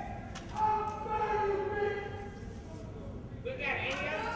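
Unintelligible voices that the recogniser could not turn into words, heard through the hall, with a sharp click about a third of a second in.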